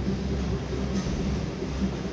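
Steady low rumble of room noise with faint music under it, and a single light tap about a second in.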